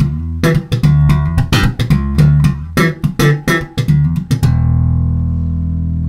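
Passive electric bass with jazz-style pickups played fingerstyle: a quick run of plucked notes with sharp string attacks, then one long held low note from about four and a half seconds in, still ringing at the end.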